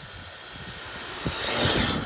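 Traxxas Slash 2WD RC truck's Titan 12-turn brushed electric motor whining, with tyre noise on asphalt, growing steadily louder as the truck speeds in and passes close, loudest just before the end.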